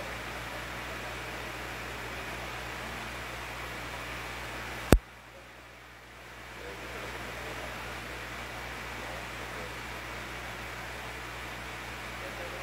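Steady hiss of background room noise with a low hum underneath. About five seconds in comes a single sharp, loud click, after which the hiss drops away and fades back over a second or so.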